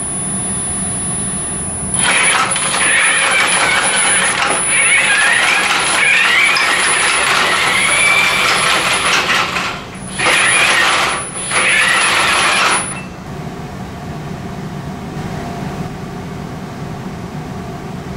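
Electric drive motors of a mobile robot whining as it rolls over a hard floor, the whine wavering up and down in pitch. The drive stops briefly twice and then cuts out about two-thirds of the way through, leaving a quieter steady hum.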